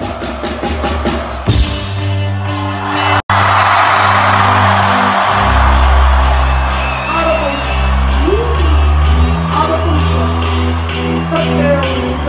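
Loud live dance-style music through a festival PA. A steady beat and a rising build-up cut out for an instant about three seconds in, then a heavy bass-driven beat drops in while a large crowd cheers and whoops.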